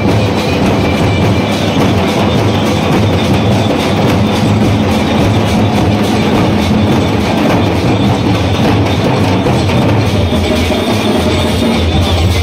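A street drum group playing a loud, fast, unbroken beat on drums struck with sticks.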